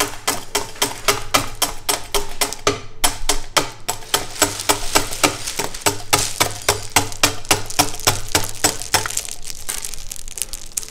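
Hard-candy cutting machine chopping rods of pulled candy into small pieces: a rapid, regular clicking about five times a second over a low steady hum.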